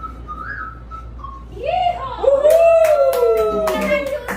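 A long whistled note, rising sharply and then sliding slowly down, over a run of sharp knocks.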